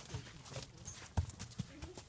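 Tennessee Walking Horse's hooves striking the ground at a trot: a few separate hoofbeats, the loudest a little past halfway.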